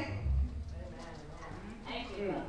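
A low thud a fraction of a second in, as a man moves with a handheld microphone, then a quiet stretch of faint room sound; the end of a shouted word rings out at the very start.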